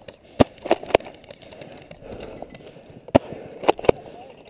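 Airsoft guns firing single shots: about six sharp snaps at uneven intervals, two close together early, one near a second in, then three in quick succession in the last second.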